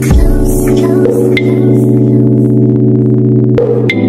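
Background music: held synth chords over a deep bass, with a bass note that slides in pitch at the start and again near the end.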